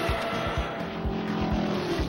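Cartoon sound effect of a vehicle engine speeding past, a steady drone that stops near the end, over background music with a regular bass beat.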